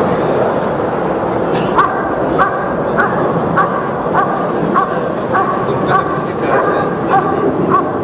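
German Shepherd barking in a steady, even rhythm at a helper in a hide, about one and a half barks a second, starting about two seconds in over a steady background hiss. This is the hold-and-bark of Schutzhund protection work: the dog has found the helper and guards him by barking rather than biting.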